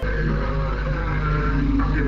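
Low-fidelity archival recording of a shortwave numbers-station broadcast: a heavy steady hum with a low droning tone that pulses roughly twice a second.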